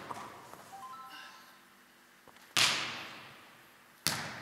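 A volleyball struck hard once by a player's hand or forearm about two-thirds of the way through, a sharp smack that rings on for over a second in the large, echoing hall.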